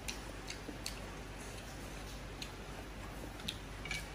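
Close-miked chewing of a mouthful of noodles: about six sharp, wet mouth clicks and smacks at irregular intervals, over a steady low hum.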